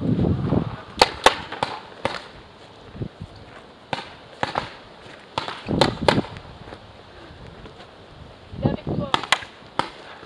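Paintball markers firing: scattered sharp pops, with a quick run of three or four shots about a second in and another near the end.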